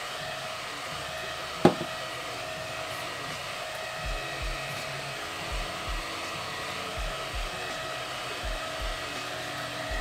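Small handheld battery fan running steadily close by, a motor whine over rushing air, drying freshly sprayed setting spray on the face. A sharp click comes just under two seconds in, and soft low bumps come from the middle on.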